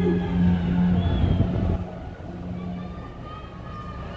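A cruise ship's deep horn sounds with one steady low note that cuts off a little under two seconds in, followed by faint distant voices of passengers.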